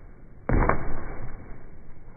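A sudden thud about half a second in, followed by a rush of noise that dies away over the next second.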